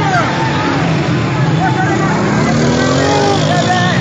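Shouting voices over continuous noise, with a motor vehicle engine rising in pitch through the second half.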